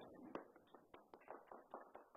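Faint, sparse applause: a few people clapping irregularly, thinning out near the end.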